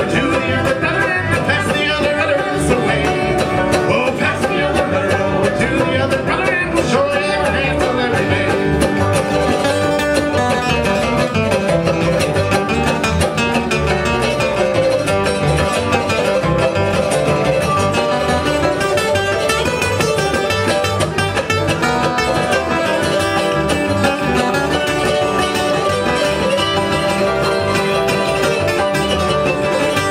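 Acoustic bluegrass string band playing live: banjo and guitar with fiddle, mandolin and upright bass, in a steady, driving rhythm.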